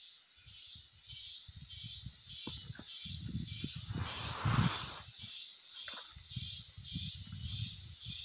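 Outdoor insect chorus, a high buzz pulsing about twice a second. Under it are low rumbles and thumps from the handheld microphone, with a brief louder rustle about four and a half seconds in.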